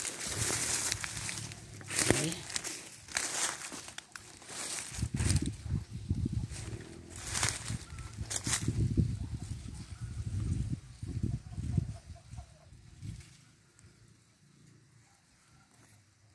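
Dry grass and brush rustling and crackling as a person pushes through on foot, in irregular bursts that die away near the end.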